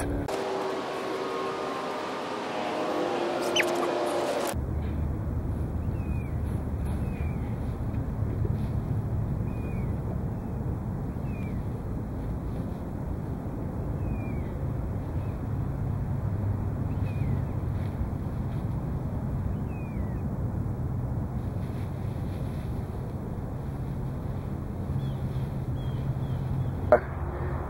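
Hands digging and scraping through a pile of loose wood-chip mulch, over a steady low rumble, with short high falling chirps every second or two. The first few seconds sound different, with a few held tones, before the steady part begins.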